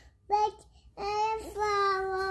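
A toddler singing: one short sung note, then about a second in a long, steady held note.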